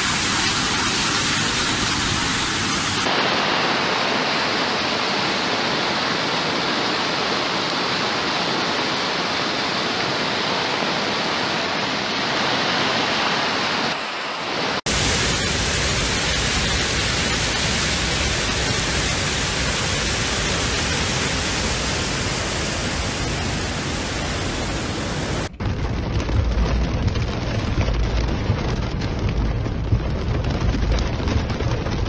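Loud, steady rush of floodwater and heavy rain, from several separate recordings joined one after another, so the noise changes abruptly a few times. A deeper rumble joins it in the last few seconds.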